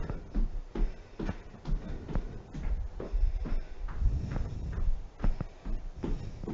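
Sneakered footsteps on a hardwood floor: a brisk marching run of footfalls, about two or three a second, with forward and backward steps and small kicks.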